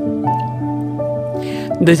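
Soft new-age instrumental music with sustained chord notes, the chord changing about a quarter second in and again about a second in. A brief hiss comes about one and a half seconds in.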